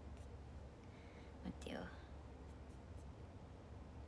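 A woman's soft whispered murmur, one brief sound with a falling pitch about a second and a half in, over a steady low room hum, with a few faint clicks.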